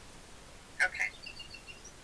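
A small bird chirping faintly in the background: a quick run of about five short, high notes.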